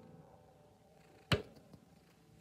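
A single sharp knock a little past halfway through, against a quiet background with a faint steady hum.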